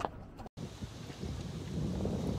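Wind buffeting a phone microphone outdoors: a low, rumbling noise, broken by a brief dropout about half a second in.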